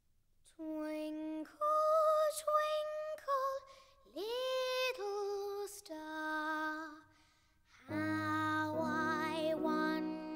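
A solo female voice sings a slow lullaby unaccompanied, with long held notes and short breaks between phrases. About eight seconds in, a soft instrumental accompaniment comes in under the voice.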